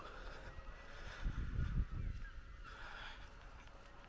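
Faint bird calls over quiet outdoor background noise.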